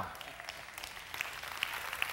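Theatre audience applauding, a steady patter of many hand claps.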